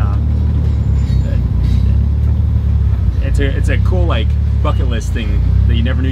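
Steady low engine and drivetrain drone heard inside the stripped, roll-caged cabin of a Mitsubishi Lancer Evolution while it is being driven.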